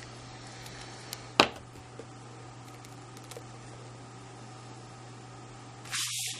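Quiet tabletop handling over a steady low hum: about a second and a half in, one sharp knock as a plastic glue bottle is set down on the craft mat, with a few faint ticks after it. Near the end comes a brief rustle of card sliding on the mat.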